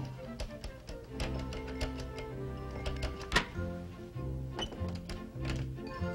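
Light comic background music with a stepping bass line, over light metallic clicking of a wire being jiggled in an old chest's lock. One sharp click about three and a half seconds in, as the lock gives.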